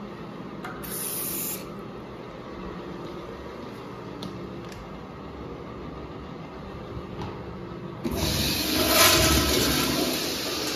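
Flush of a 1980s Kohler Kingston wall-hung toilet with a flush valve: a loud rush of water starts suddenly about eight seconds in and peaks about a second later. Before it there is only steady background noise with a few faint clicks.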